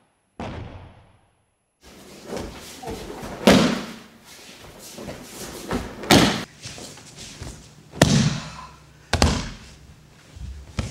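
Aikido breakfalls: four loud thuds of thrown partners' bodies landing on the dojo mat, a couple of seconds apart, each with a short echo in the hall.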